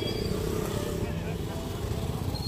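Busy street traffic: motorcycles passing close by with a steady engine rumble, mixed with the chatter of people in the crowd.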